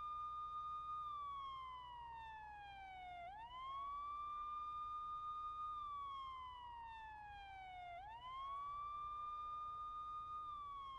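A siren wailing in a slow cycle: a quick rise in pitch, a held high note, then a long slow fall, repeating about every four and a half seconds. The quick rise comes twice, about three and a half seconds in and again about eight seconds in.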